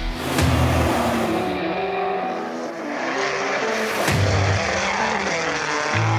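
Background music with rally car engine noise mixed in, with a sharp hit at the start and another about four seconds in.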